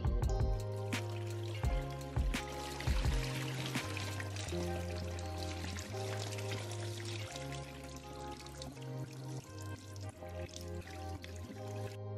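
Background music, with dirty water pouring from a carpet cleaner's recovery tank into a stainless steel sink for several seconds.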